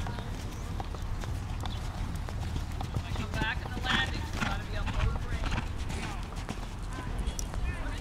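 Hoofbeats of horses walking and cantering on sand arena footing, a run of short thuds, with voices talking nearby.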